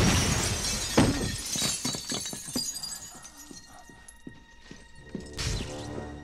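Glass shelves shattering as a man is slammed into them: a loud crash at the start and a second about a second in, followed by falling shards tinkling and clattering as it dies away. Another short crash comes near the end.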